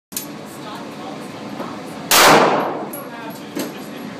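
A single handgun shot about two seconds in, loud and ringing on in the echo of an indoor range.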